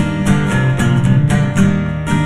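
Worship band music led by a strummed guitar, in a steady rhythm of about four strokes a second over sustained bass notes.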